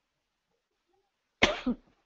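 Near silence, then about a second and a half in a person gives a short double cough.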